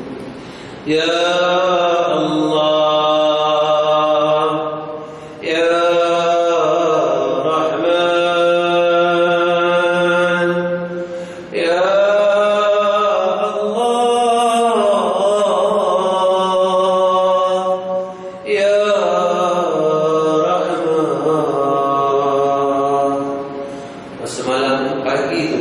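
A man chanting solo in long, drawn-out melodic phrases with ornamented, wavering pitch, four phrases with short breaths between them.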